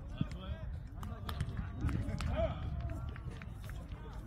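Several men's voices calling and chatting across an open outdoor court, not close to the microphone, with a few scattered sharp knocks.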